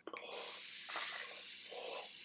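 Aerosol spray can being sprayed: a continuous hiss of spray, strongest about a second in.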